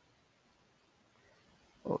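Near silence: faint room tone, broken near the end by a short voiced sound as the man starts to say 'okay'.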